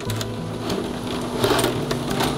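Stiff cane strands of a basket crackling and clicking as they are woven by hand, with a few sharp clicks in the second half. Soft background music with low held notes runs underneath.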